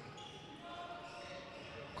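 Faint sound of handball play on an indoor court: the ball bouncing, with the low hum of a large hall.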